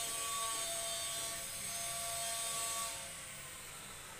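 A motor whirring steadily with several held tones, dropping away about three seconds in.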